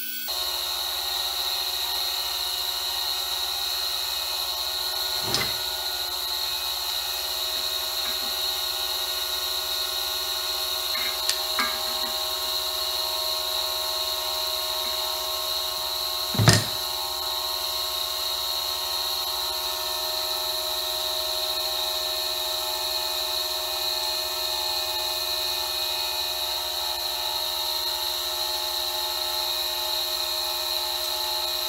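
Steady, unchanging whine of a power tool running in the background, with a few light clicks and one louder thump about halfway through.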